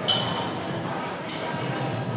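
Gym room noise, with a short high clink right at the start and a soft knock a little over a second in.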